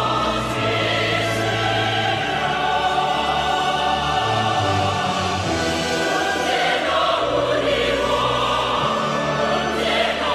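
A choir singing a North Korean song in long, held notes over an instrumental accompaniment with a moving bass line.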